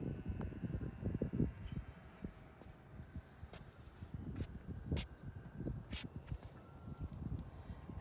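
Wind buffeting the microphone in uneven low gusts, with a few faint clicks.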